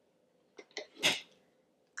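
A few faint clicks from hands rummaging in a small wooden box, then a short breathy hiss about a second in.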